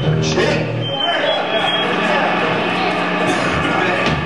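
Live punk band's guitars and bass ringing out on a final low chord that stops about a second in, with a brief thin high whine just after. Then voices and crowd noise fill the room.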